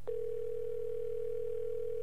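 Telephone line tone heard over a phone line as a call is being placed: one steady tone lasting about two seconds that starts and cuts off sharply.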